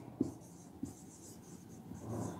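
Marker pen writing on a whiteboard: faint scratchy strokes, with two short soft clicks in the first second.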